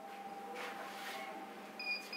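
Room tone with a steady faint electrical hum, and a short high electronic beep near the end.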